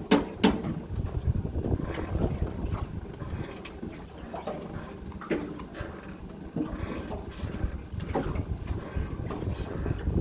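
Wind buffeting the microphone on a small boat at sea, a steady low rumble, with a few sharp clicks and knocks, two close together at the start.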